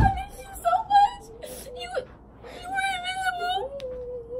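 A young girl whimpering and crying in high, wavering wails, after a short thump right at the start.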